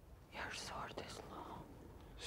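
Whispered speech: a hushed, breathy voice from shortly after the start until near the end.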